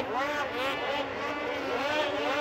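Several racing snowmobiles' two-stroke engines revving up and down together, pitch rising and falling as the sleds work the throttle through the track.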